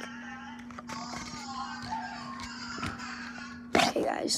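Faint electronic music and sound effects from a Boxer robot toy's speaker, over a steady low hum. A sudden loud knock comes near the end.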